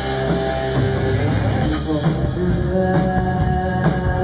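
Live rock band playing: electric guitar and a drum kit, with drum and cymbal hits coming thicker from about halfway through.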